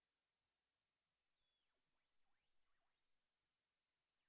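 Near silence, with only a very faint wavering high whistle that dips in pitch a few times.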